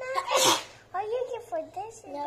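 A young girl sneezes once: a rising "ah" and then a loud "choo" about half a second in. A child talks after it.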